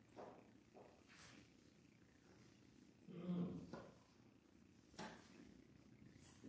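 Near silence in a quiet church, with a brief, low murmured voice about three seconds in and a few faint ticks.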